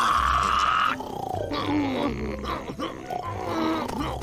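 A cartoon man's frightened scream, held for about a second, followed by shorter gliding yelps and grunts from him and a bear.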